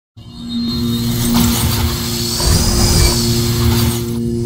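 Cinematic logo-intro sound design: a loud swelling whoosh over a steady low drone, with a bright tone that arcs up and back down near the middle; the whoosh cuts away at the end while the drone carries on.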